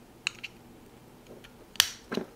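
Two sharp little metal clicks, a faint one about a quarter second in and a louder one near the end, as a small C-clip is pushed onto the gear shaft inside a fishing reel's housing and snaps into place to hold the gear.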